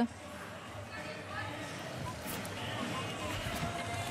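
Faint murmur of a crowd and distant voices in a large hall, rising slightly toward the end.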